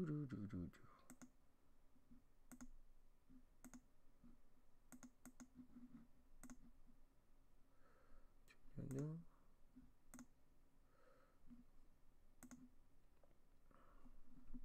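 Sparse computer mouse clicks, one every second or so and some in quick pairs, against near silence, as reference images are pulled up. A short voiced sound about nine seconds in.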